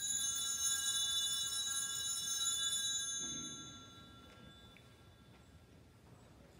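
A small metal altar bell struck once, ringing with several high, steady tones and dying away about four seconds in.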